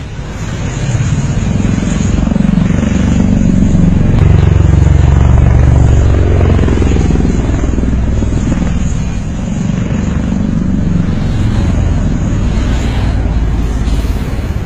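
Low, continuous droning rumble of an aircraft engine, swelling over the first few seconds, loudest around the middle, then easing off a little.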